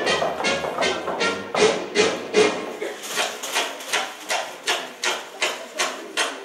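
Backing music trailing off, giving way to evenly spaced hand claps, about three a second, from the performers on stage.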